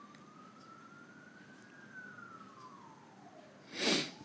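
A faint siren wailing in the background: one slow tone rising to a peak about one and a half seconds in, falling, then jumping back up and starting to rise again near the end. A short burst of noise comes just before the end.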